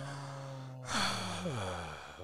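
A man's long voiced sigh: a held steady hum, then about a second in a breathy exhale that falls in pitch.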